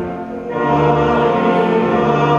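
A choir singing held chords, moving to a new chord about half a second in.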